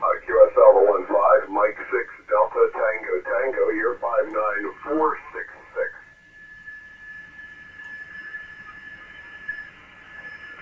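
Single-sideband voice from an ICOM IC-7851 shortwave transceiver's receiver on the 20-metre band, thin and cut off above about 3 kHz, for about six seconds. Then the voice stops, leaving band hiss with a steady faint carrier whistle.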